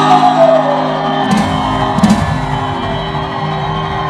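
Music with sustained, steady chords, struck by two sharp hits about a second and two seconds in.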